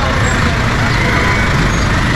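Street traffic noise from a traffic jam: motor vehicle engines running close by, a steady, loud sound with no break.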